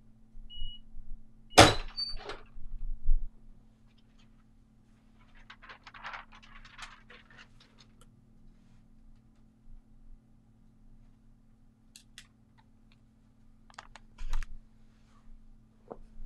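Auto-open clamshell heat press finishing its timed press: the timer beeps at the end of the countdown, and about a second and a half in the upper platen releases and pops open with a loud thunk and a few smaller knocks. Quieter rustling and a few clicks and knocks follow.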